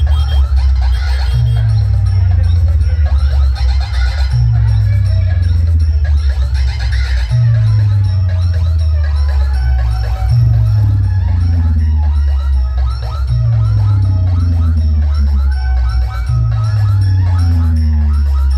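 Very loud music blasting from a DJ sound-box rig of stacked speaker cabinets in a box competition. A heavy bass note drops in pitch and repeats about every second and a half under busy higher sounds.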